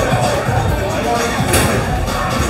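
Background music playing over the chatter of other diners in a busy restaurant, with one brief sharp click about one and a half seconds in.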